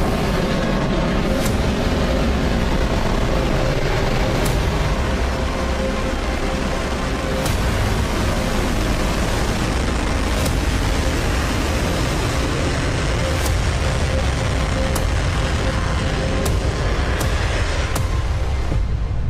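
Rocket engine noise: a loud, steady rumble and hiss from Starship's Raptor engines during the landing burn, just before splashdown. A few faint ticks are heard every few seconds.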